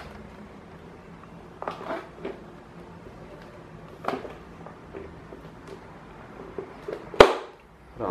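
Plastic clicks and knocks as the fan's head and grille are handled and fitted, a few light ones through the middle and one sharp, louder click about seven seconds in.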